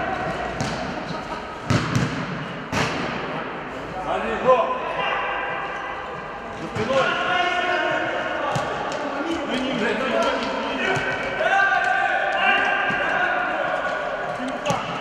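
Futsal ball being kicked and bouncing on an indoor hall floor: several sharp thuds, the loudest about four and a half seconds in. Players' shouts run over them in a reverberant sports hall.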